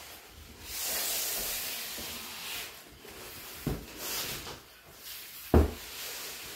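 Heavy cardboard boxes being shifted: a rubbing, scraping noise for about two seconds, then two dull thumps as they are set down, the second one louder, near the end.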